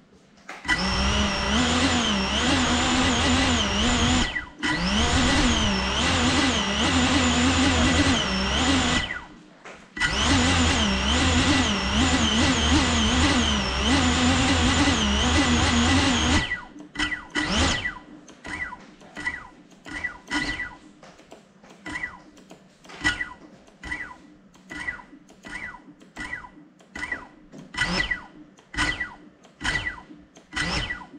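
Small FPV quadcopter's brushless motors spinning up and running, their whine wavering in pitch, with two brief cut-outs, while the drone sits still. About halfway through the continuous run stops and the motors give short repeated blips, roughly one or two a second.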